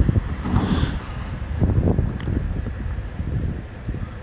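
Wind buffeting a phone's microphone: an uneven, gusty low rumble, with a single short click about two seconds in.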